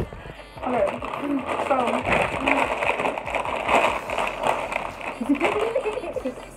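Foil-lined chip bags crinkling as they are handled and pulled open, under short bursts of laughter. A single sharp click comes right at the start.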